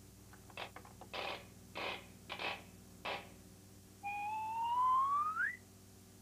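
A wind-up key turned in a toy machine, giving several short ratcheting winds, followed by a rising whistle sound effect about a second and a half long that climbs steadily and then sweeps up sharply at the end.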